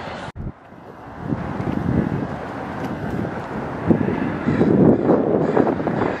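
Wind buffeting the camera microphone: an irregular low rumble that builds about a second in and grows louder toward the end.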